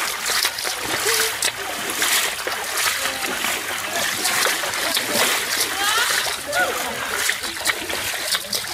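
Runners wading through a knee-deep muddy stream, water splashing irregularly with each stride.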